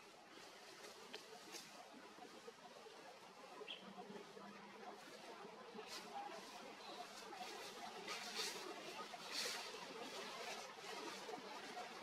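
Faint outdoor background of a low murmur of distant voices, with a few brief high squeaks about four seconds in and again near seven seconds.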